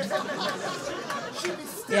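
Comedy-club audience reacting to a joke with mixed laughter and chatter from many voices, fading over the two seconds.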